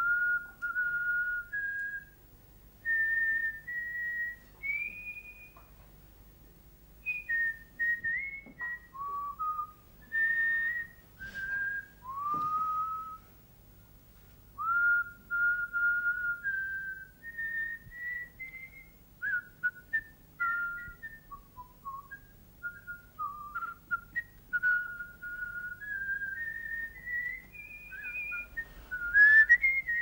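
A man whistling a slow tune through pursed lips: single clear notes, some held and some sliding up into pitch, in short phrases with brief pauses between them.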